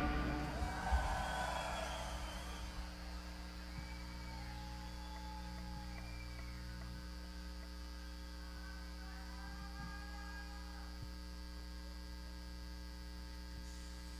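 Steady low electrical mains hum from a concert sound system, left once the band's music stops at the start. Faint scattered shouts rise and fall over it during the first several seconds.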